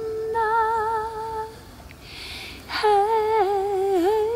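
A woman's voice singing wordless long notes a cappella, each held with a wavering vibrato. The first note lasts about a second and a half; after a short pause a second note begins about three seconds in.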